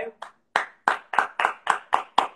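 A single person clapping their hands in congratulation, sharp separate claps about four a second, starting about half a second in.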